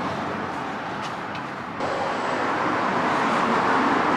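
Steady road traffic noise, a little louder from just under two seconds in.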